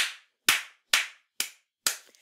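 One person clapping their hands: five sharp claps, evenly spaced about half a second apart.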